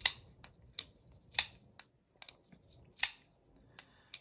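Vosteed Raccoon button-lock folding knife being worked open and closed: a series of sharp metallic clicks and snaps from the blade and lock, about eight or nine in all, the loudest about a second and a half in and about three seconds in. The action is a little stiff, which the owner puts down to the knife being new and still cold from the mailbox.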